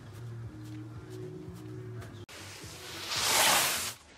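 Background music with low held notes, cut off about two seconds in. Then skis sliding and scraping over snow, a hiss that swells to its loudest near the end and stops abruptly.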